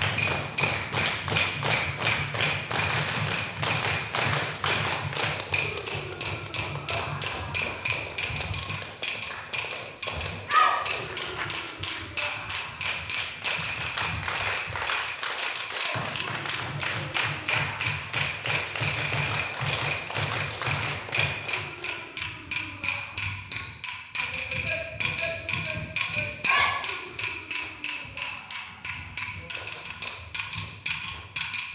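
Dance music that starts suddenly: a quick, steady beat of wooden clapsticks tapping over a low drone, accompanying an Aboriginal dance.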